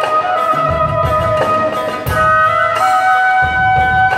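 Japanese transverse bamboo flute playing a melody of long held notes, accompanied by a plucked shamisen.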